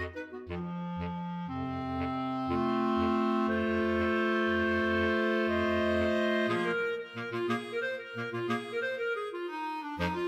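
Clarinet choir of three B-flat clarinets, alto clarinet and bass clarinet playing. Short triplet figures give way to long held chords that build up and grow louder over the bass clarinet's repeated low triplet notes. The chord breaks off about six and a half seconds in, and a livelier passage with short detached bass notes follows.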